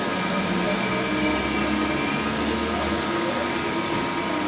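Electric multiple unit (EMU) local train moving away along the platform as its last coach recedes: a steady electric hum with several held tones over running-gear noise.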